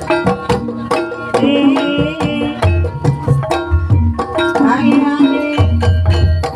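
Javanese gamelan music accompanying ebeg (kuda lumping) dancing: busy hand-drum (kendang) strokes over ringing metallophone notes and deep low pulses. A wavering high melodic line rises over it twice.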